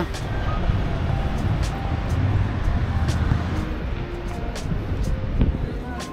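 City street ambience heard while walking: a steady low rumble, with faint snatches of distant voices.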